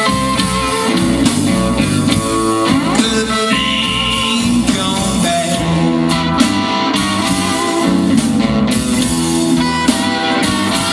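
Live blues band playing, electric guitar over bass guitar, heard through the outdoor stage PA.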